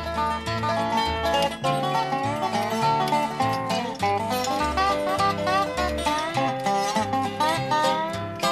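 Instrumental break in a bluegrass-style country song: a string band plays plucked and sliding notes over a steady bass line, with no singing.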